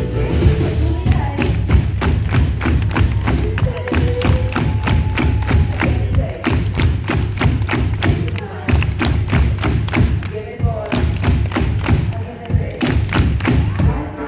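Live band music at a concert, a Bösendorfer grand piano playing over a steady pounding beat of about three hits a second, with a heavy, loud low end.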